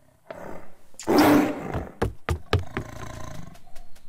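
A lion roars, loudest between about one and two seconds in, followed by a quick series of sharp knocks and thuds.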